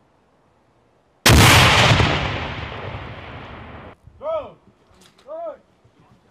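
A live fragmentation hand grenade detonating: one sharp, very loud blast with a rumble that dies away over a few seconds and cuts off abruptly. Two short calls follow about a second apart.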